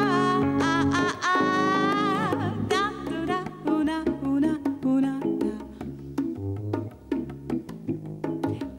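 Live jazz band playing a slow, melancholy song: a woman's voice holds a sung line with vibrato over electric keyboard and bass for the first couple of seconds, then drops out for an instrumental stretch of quick hand-played bongo hits over bass and keyboard.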